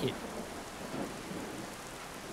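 Steady heavy rain, an even hiss of falling rain on pavement.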